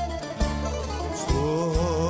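Live Greek popular (laïko) band playing, with plucked-string accompaniment over a steady bass; a male voice comes back in singing with a wide vibrato about a second and a half in.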